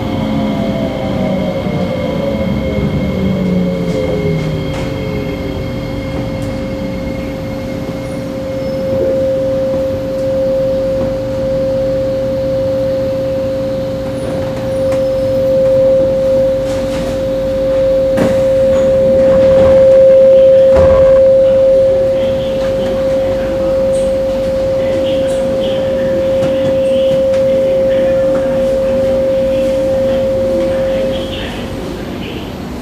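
Electric MRT train's drive whine falling in pitch as the train slows to a halt over the first few seconds. Then a steady high electrical hum from the standing train, with a couple of knocks past the middle.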